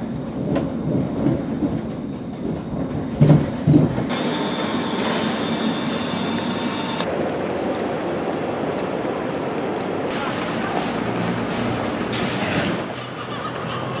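A passenger train running into a station, heard from inside the carriage, with a few heavy clunks from the wheels over the rails. About four seconds in it gives way to the steady, echoing ambience of a large station concourse, with a thin high whine for a few seconds.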